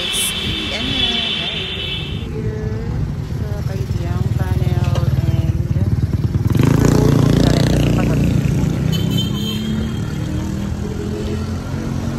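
A motorcycle engine passing close, swelling to its loudest about seven seconds in, over a steady low traffic rumble.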